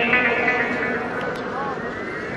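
Music for a rhythmic gymnastics floor routine: a held chord that fades about a second in, followed by a smooth rising sweep in pitch.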